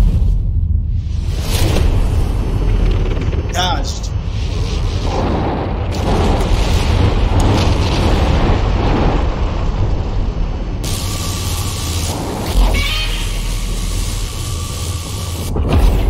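Monster-battle film soundtrack: deep booms and rumbling explosions over music. A brief wavering pitched cry comes about four seconds in, and more pitched sound runs from about eleven to twelve and a half seconds.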